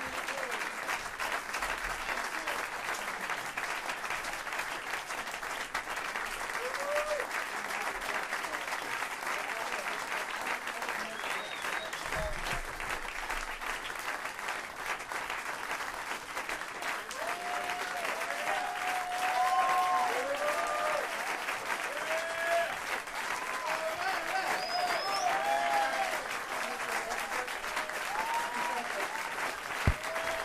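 Club audience applauding steadily at the end of a jazz set, with scattered shouts and whoops that grow more frequent in the second half.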